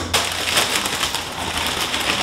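A Tostitos tortilla chip bag crinkling as it is handled: a dense, continuous crackle.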